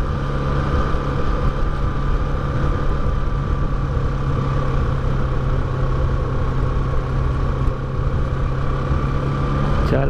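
Bajaj Pulsar 200NS single-cylinder engine running steadily while the motorcycle cruises at moderate speed, a constant hum with a faint higher whine over riding wind noise.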